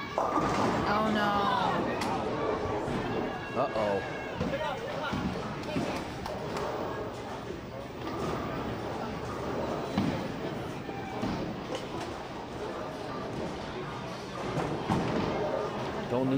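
A bowling ball hitting the pins with a clatter of pins just after the start, followed by voices in the bowling alley reacting. Scattered knocks of balls and pins carry on through the hall.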